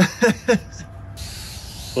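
A few short bursts of laughter, then, about a second in, a steady high hiss starts abruptly and carries on.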